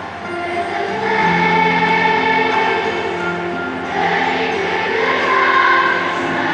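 A massed children's choir of thousands singing together in a large arena, holding long notes that step from one pitch to the next. The singing grows louder about a second in.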